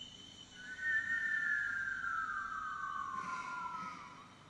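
Men whistling together, one long note that falls slowly in pitch over about three seconds, two slightly different pitches running side by side.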